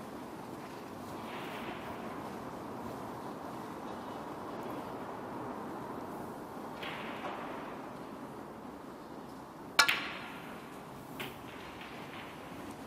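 A snooker shot played in a quiet arena: one sharp click of the cue and balls striking about ten seconds in, then a fainter click about a second later, over a steady low hush of the hall.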